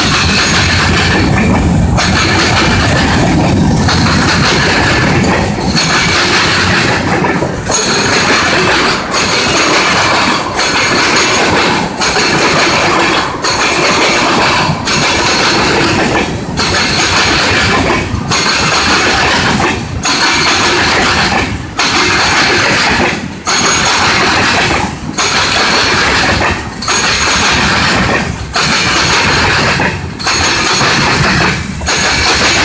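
Freight train of covered hopper cars rolling past close by, the wheels running loudly on the rails. The sound dips in a regular rhythm about every second and a half to two seconds.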